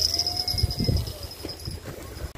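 Insects trilling steadily in a high, pulsing band, with a faint thin tone that rises and falls once and a few low knocks.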